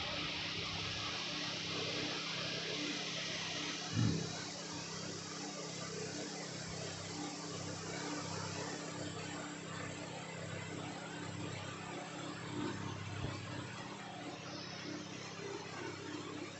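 Steady hiss of blowing air with a low hum under it, from a hot air rework station running at the bench, its hiss softening a little after about four seconds. A single knock about four seconds in.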